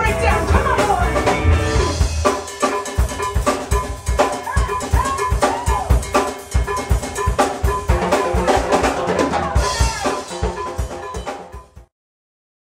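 A live band playing: electric guitar lines with bent notes over congas, timbales, drum kit and cymbals, with a run of hard, fast percussion hits in the middle. The music fades out and stops just before the end.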